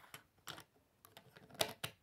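Plastic Lego bricks clicking and tapping as they are handled, pressed together and set down on a wooden table: a few short clicks, the loudest two in quick succession near the end.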